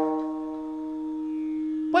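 Harmonium holding one steady drone note, the sustained accompaniment of a kirtan.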